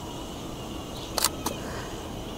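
Camera shutter firing for a flash shot: two sharp clicks about a quarter second apart, a little past the middle, over faint outdoor background noise.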